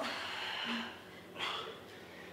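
Hard breathing of a person working through fast push-ups: a long breath out at the start, then a short, sharp one about a second and a half in.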